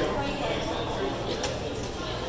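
Indistinct voices of people talking over a steady low hum, with a short sharp click about one and a half seconds in.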